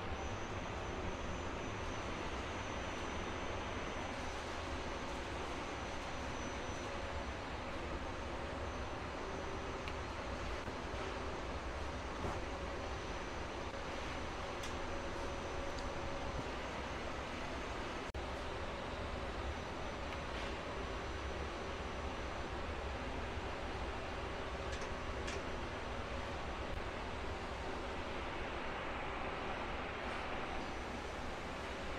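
Steady machine-shop background noise: a low rumble and hum of running machinery, with a faint high tone that comes and goes and a few light clicks.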